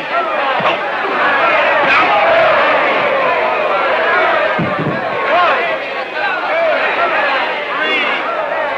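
A boxing crowd yelling and cheering, many voices shouting over one another without a break, with a dull thump about halfway through.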